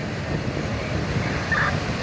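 Fire engines running at the scene, their engines and pumps feeding charged hose lines, heard as a steady rumbling noise, with one brief faint higher sound about one and a half seconds in.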